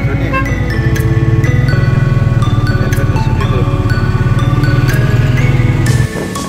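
Background music with a bright mallet-percussion melody, over the low, steady running of the tuk-tuk's motorcycle engine. The sound changes abruptly at the end.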